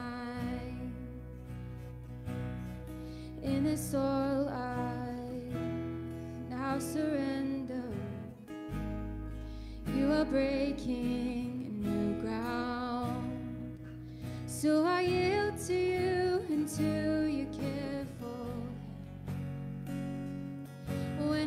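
Live worship band playing a slow song: a woman sings the lead melody with held, wavering notes over acoustic guitar and electric bass.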